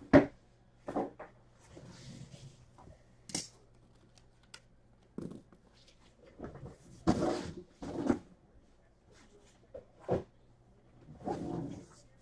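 Cardboard boxes being moved and set down: irregular knocks and clunks with bursts of rustling and shuffling, the sharpest knock just after the start.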